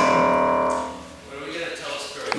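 Upright piano: a cluster of keys pressed at once by a toddler's hands, the chord ringing out and fading away over about a second.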